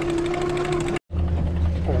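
Small outboard motor running steadily at trolling speed, a constant droning hum. It cuts out abruptly about halfway through and comes back at once with a deeper hum.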